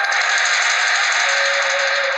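Background music of a drama score: a sustained shimmering, hissing swell over held notes, with a lower note coming in about halfway through.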